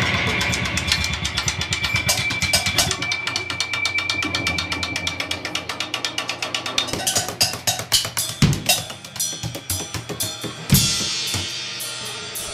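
Live rock drum kit playing a fast run of snare and bass-drum strokes with cymbals over a held low note, then two big crashing hits near the end as the song winds down.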